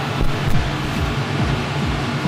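Steady low mechanical hum with a hiss over it, and a sharp click about half a second in.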